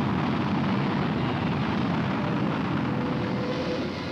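Solid-propellant rocket motor of a Pershing missile firing: a loud, steady rushing noise that eases slightly in the last second.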